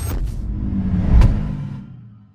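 Logo intro sting: a deep bass rumble with whooshes and hits, the loudest hit a little over a second in, fading out near the end.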